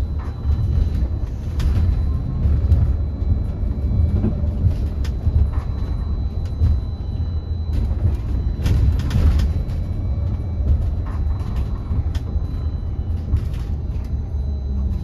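Upper-deck interior of a battery-electric Wright StreetDeck Electroliner double-decker bus on the move: a steady low rumble of road and body noise, with scattered rattles and knocks. The rattling comes thickest about nine seconds in.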